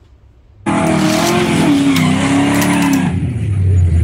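Racing-car sound effect, an engine note with wavering pitch, cutting in suddenly about half a second in, with a deeper tone joining near the end.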